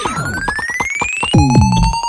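Dubstep-style electronic music played on an Arturia Spark Dubstep drum machine: a synth tone glides steadily upward over fast drum hits that drop in pitch. A little over halfway through, a new lower tone enters with heavier kicks.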